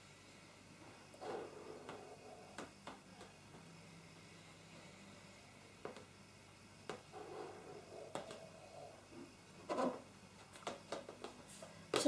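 A balloon being blown up, heard faintly: three soft breaths, about a second in, around seven seconds in and near ten seconds, with air drawn in through the nose while the balloon is kept in the mouth unpinched. Small clicks fall in between.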